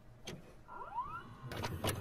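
Videocassette recorder mechanism going into play: a few sharp mechanical clicks, with a short rising motor whine about a second in.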